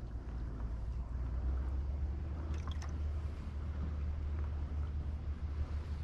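Low rumble of wind on the microphone, gusting stronger through the middle, over faint water lapping at the dock. A few small clicks about two and a half seconds in.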